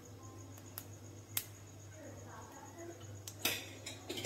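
Whole spices frying in oil in a nonstick pan, heard faintly over a low steady hum. There are a few sharp clicks, and about three and a half seconds in comes a short clatter.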